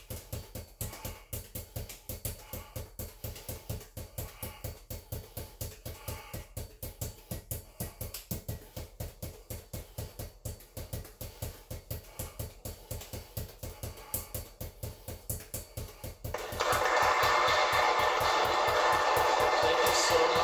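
Five juggling balls force-bounced off a hard floor and caught in a fast, even rhythm of about four bounces a second. About sixteen seconds in, a loud, even rush of noise comes in over the bouncing.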